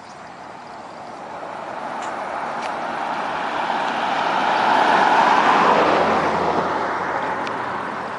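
A vehicle driving past on a paved road: its tyre and engine noise build to a peak about five seconds in, then fade as it moves away.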